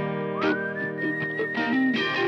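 Instrumental passage of a soft rock ballad: plucked acoustic guitar under a high held melody note that slides up into pitch about half a second in.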